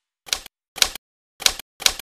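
Typewriter key strikes used as a sound effect: four single, crisp strikes about half a second apart, one for each letter as it appears.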